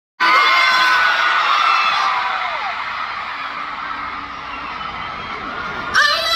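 Large stadium concert crowd screaming and cheering, many high-pitched shrieks loudest at the start and slowly dying down.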